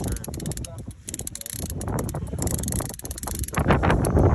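A fishing reel being cranked while reeling in a hooked fish, giving a rapid run of clicks, over wind buffeting the microphone that grows louder near the end.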